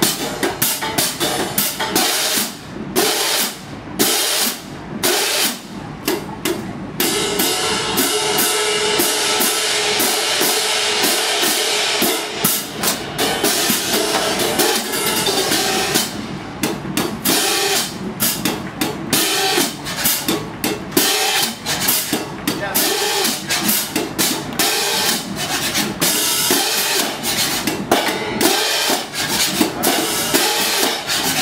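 A drum corps cymbal line playing pairs of hand-held crash cymbals together. Rhythmic crashes are stopped short by sudden chokes. A stretch of sustained ringing comes about a quarter of the way in, and a run of quick, repeated strikes follows.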